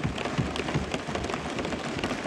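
Many lawmakers thumping their desks in a dense, even patter of hand blows, the assembly's show of approval for the line just spoken.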